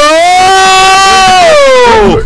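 A single voice holding one long note, gliding up at the start, held steady, then dropping away near the end.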